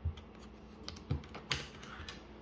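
A few light knocks and clicks of a wooden pencil and hand against the table and drawing board as the pencil is set down, the sharpest click about one and a half seconds in.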